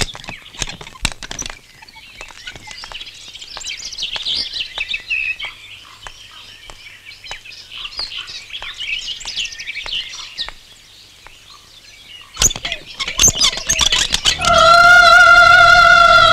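Birds chirping and twittering, with scattered sharp clicks. About twelve seconds in comes a quick run of sharp knocks. Then, about a second and a half before the end, a loud, held musical note starts, steady in pitch.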